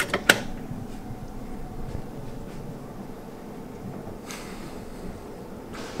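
Two sharp clicks a third of a second apart at the start, from items being handled in a kitchen, then low steady room noise with a brief hiss about four seconds in.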